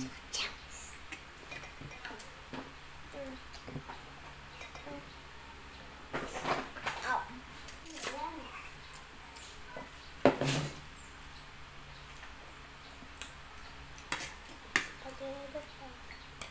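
Metal forks clinking and scraping on a plate during a meal, in scattered sharp clicks, the loudest about ten seconds in, with a few short bits of low talk.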